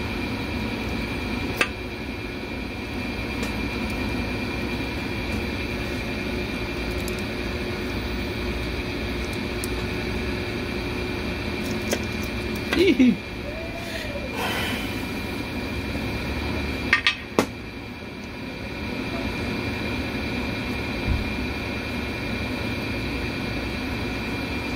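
Steady hum of a fan or air conditioner in a small workshop. A few sharp metallic clicks and taps stand out, the loudest about a third and two thirds of the way through: hands pressing the small steel rollers of a Dodge 727 transmission's reverse sprag into place.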